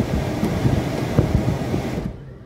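Car air-conditioning blower of a 2024 Maruti Suzuki Dzire blowing steadily through the dashboard vents, cutting off right at the end as the AC is switched off.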